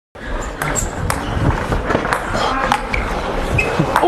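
Table tennis rally: a celluloid ball struck by paddles and bouncing on the tables, heard as irregular sharp clicks about two or three a second.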